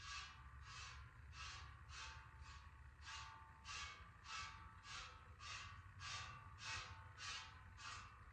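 Jersey cow being milked by hand: faint, short hissing squirts of milk into a pail in a steady alternating rhythm, nearly two squirts a second.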